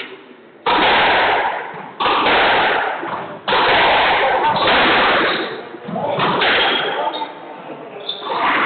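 Squash ball being struck in a rally: sharp cracks of racket on ball and ball on wall, each ringing out in the echoing court, about one every second or so.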